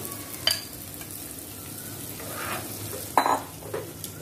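Egg and cabbage frying in a hot pan with a steady sizzle, while a spatula stirs and scrapes through the mixture. The spatula knocks against the pan twice, lightly about half a second in and louder just after three seconds.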